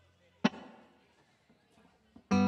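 A single sharp knock on a plugged-in electric guitar about half a second in, its strings ringing briefly and dying away, over a faint low hum.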